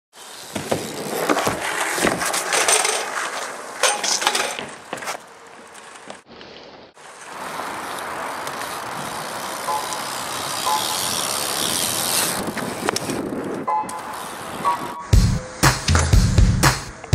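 BMX bike riding on asphalt and concrete: tyres rolling with several sharp knocks from landings and impacts in the first five seconds, a short lull, then a steady stretch of rolling noise. About fifteen seconds in, a song with a heavy beat starts.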